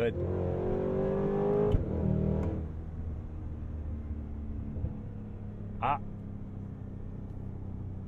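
Supercharged 6.2-liter V8 of a Cadillac Escalade V accelerating hard, heard from the cabin. Its note rises for nearly two seconds to a sharp crack, then the throttle comes off and it settles into a low, steady cruising drone with tyre and road noise.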